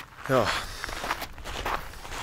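Footsteps on a loose volcanic gravel path, at a walking pace.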